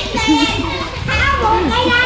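Children's voices shouting and chattering, as in a group of kids playing a game.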